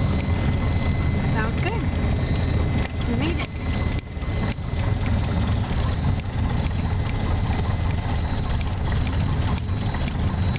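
A light single-engine airplane's piston engine and propeller run at low power, heard inside the cockpit as a steady low drone, while the plane rolls along the runway after touchdown.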